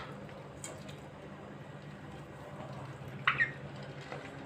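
Young poultry and ducklings pecking and dabbling at crumbled feed in a metal bowl, a soft patter of bills over a steady low hum. A single short sharp sound, a peep or a bill knocking the bowl, about three seconds in.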